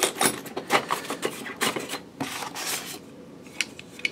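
Small black airsoft rifle parts being lifted out of a foam packing insert by hand: a string of light clicks and knocks, with foam rubbing and scraping between them.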